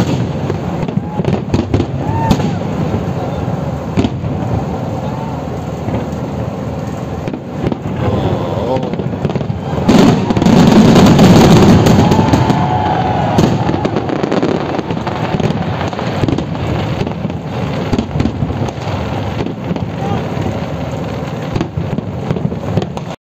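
Fireworks display: aerial shells bursting and crackling throughout, building to a louder, dense barrage about ten seconds in.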